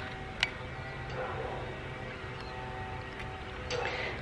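Faint camera handling as a folding Polaroid Land Camera is opened and its bellows pulled out: one sharp click about half a second in and light handling noise near the end, over a faint steady hum.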